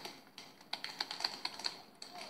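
Paintball guns firing in a rapid, irregular string of sharp pops, a few early on and then a quick burst of about eight in a second.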